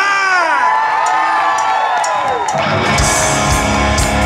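Crowd whooping and cheering, then a live rock band with drums and bass guitar comes in about three seconds in.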